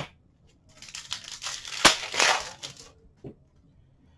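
Trading cards and foil pack wrappers being handled: soft rustling and crinkling for about two seconds, with one sharp click in the middle.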